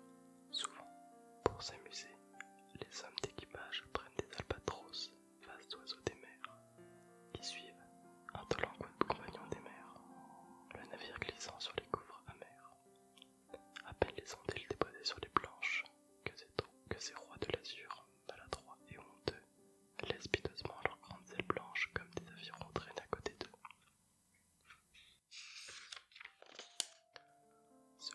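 A man whispering close to a microphone, ASMR-style, over soft background music with sustained tones. A short hiss comes near the end.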